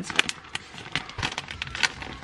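Clear plastic cello bag crinkling and crackling as it is handled, in a string of short, sharp crackles.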